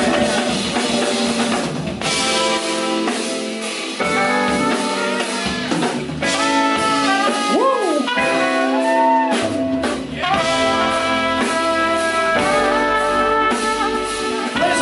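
Live band playing an instrumental break: a trumpet carries the melody over electric guitar, bass and drum kit.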